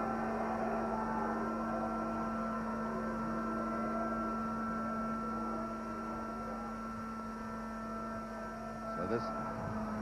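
Steady electrical hum and background hiss from an old broadcast film soundtrack, with faint wavering background sound beneath it.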